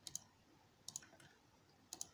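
Faint clicks of a computer's pointer button, three of them about a second apart, each a quick press-and-release double tick.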